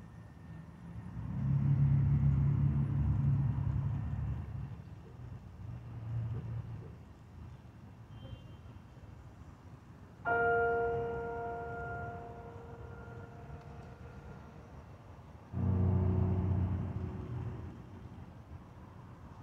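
Sparse improvised live music: a low swelling rumble in the first few seconds, then a sudden bell-like tone about ten seconds in that rings and slowly dies away, and a second, deeper bell-like stroke near the end.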